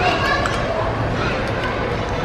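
Steady background chatter of many voices in a busy restaurant dining room.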